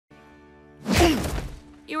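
A sudden loud crash about a second in that dies away over about half a second, over a faint steady music bed.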